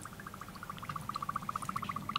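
Dry ice vibrating against metal, giving a faint, rapid, even pulsing buzz at one pitch, about ten pulses a second, that grows louder.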